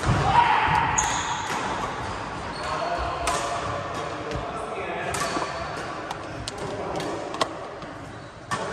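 Badminton play on a wooden sports-hall floor: repeated sharp racket strikes on shuttlecocks and a few short high shoe squeaks, over background chatter in the hall.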